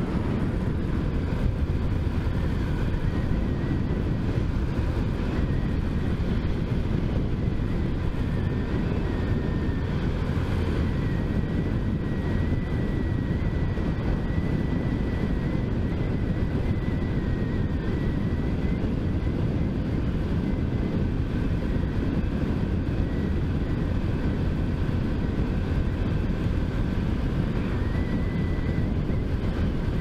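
Small motorcycle running at a steady cruising speed, with heavy wind and road noise over the microphone and a faint high whine that wavers slightly in pitch.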